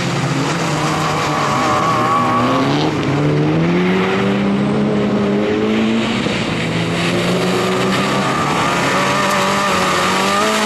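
Fiat Seicento rally car's small petrol engine driven hard at high revs, its pitch climbing and dropping back several times as the driver works the throttle and gears through a tight cone course.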